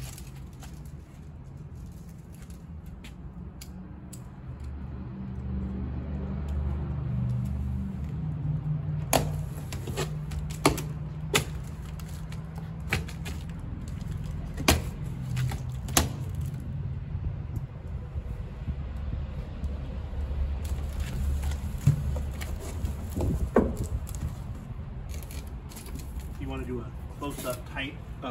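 Unpacking a cardboard box: cut plastic packing straps pulled away and cardboard flaps opened, with scattered sharp clicks and knocks over a steady low rumble.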